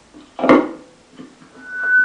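A handling thump from a Shure Green Bullet harmonica microphone through a small amplifier about half a second in, then a single high feedback tone that starts near the end and swells louder: the mic feeding back through the amp.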